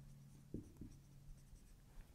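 Faint felt-tip marker writing on a whiteboard, with a couple of soft strokes about half a second in, over a low steady room hum.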